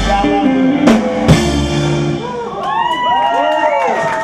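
Live band with drum kit, guitars and horns ending a song: two hard drum hits about a second in, then the last chord rings out. From about halfway through, the audience whoops and cheers in many rising-and-falling calls.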